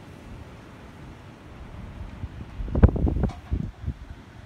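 Strong gusty wind buffeting the microphone outdoors: a steady low hiss, with heavier buffets of a gust about three seconds in.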